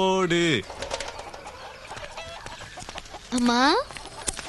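A man laughing loudly in pulses for about half a second, his pitch falling as the laugh ends. Near the end comes a short, loud rising call.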